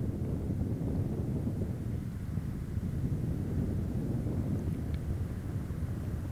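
Low, steady rumble of the Boeing 747 Shuttle Carrier Aircraft's four jet engines heard from afar on its landing approach, mixed with wind on the microphone.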